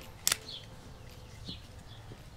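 A sharp double click about a quarter second in, then a fainter click near the middle, as a shotgun microphone's shoe mount is pushed onto a GoPro camera's mount by hand.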